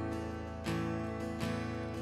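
Live worship band playing softly between sung lines: strummed acoustic guitar chords ringing over sustained electric guitar and bass, with two fresh strums in quick succession.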